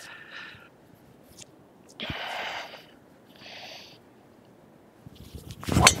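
Quiet at address with a couple of faint short hisses, then near the end the swoosh of the swing and a single sharp crack as a driver strikes a golf ball off the tee.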